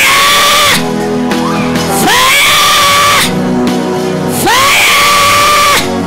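Steady keyboard chords under repeated loud screams, each sliding up in pitch and held for about a second, coming about every two and a half seconds, three times.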